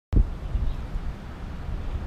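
Wind buffeting the microphone: an uneven, gusting low rumble, opening with a short thump just as the recording begins.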